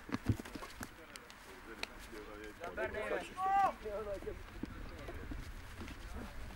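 Two boys grappling on grass in a rugby wrestling drill: scattered scuffling knocks in the first second, then a few short, high-pitched shouts from young voices around the middle.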